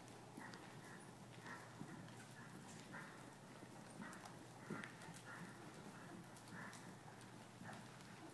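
Faint hoofbeats of a ridden horse on the dirt footing of an indoor arena, in an uneven rhythm of about two beats a second, loudest as the horse passes close about halfway through.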